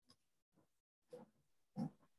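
Near silence over a video call, broken by two faint, brief sounds in the second half.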